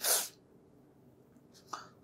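A person's short, sharp breath noise through the nose or mouth, a fraction of a second long at the start, followed by quiet until speech resumes.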